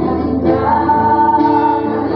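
A small group singing a Tagalog Christian worship song, women's voices leading, with acoustic guitar accompaniment; one long held note in the middle.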